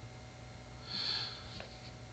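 A man's short sniff through the nose, about a second in, over quiet room tone.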